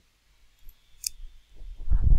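A computer mouse button clicked once, sharply, about halfway through, with a couple of fainter clicks before it.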